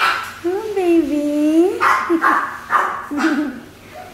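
Excited dog greeting its owners: a long wavering whining howl, then a few short sharp barks.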